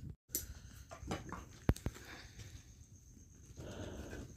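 Light clatter of steel plates and bowls as a meal of puri and chickpea curry is eaten by hand: a few sharp clicks and knocks, the loudest about a second and a half in.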